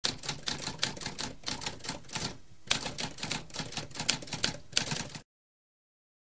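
Typewriter keys clacking in quick, uneven succession, with a brief pause about halfway through. The typing stops a little after five seconds in.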